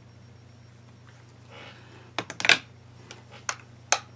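Clicks and a short clatter of plastic makeup containers being handled and set down on a table, the loudest just past the middle, with two more single clicks near the end, over a low steady room hum.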